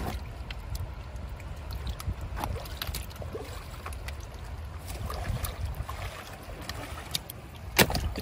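Shallow water sloshing and splashing as a long-handled hand net is worked and lifted through a fish trap, with scattered small clicks and knocks. A single sharp knock near the end.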